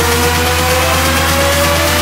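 Electronic dance music in a build-up: a synth tone rising slowly and steadily in pitch over a held low bass note and a dense hiss.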